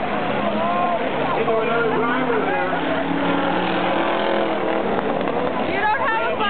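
Several race car engines running on the speedway, one rising in pitch a couple of seconds in, beneath the chatter of spectators' voices.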